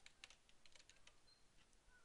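Faint computer keyboard typing: a string of irregularly spaced keystrokes as a web address is typed in.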